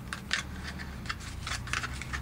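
Light plastic clicks and taps from a Kydex holster shell and its clip hardware being handled, about a dozen in an irregular string.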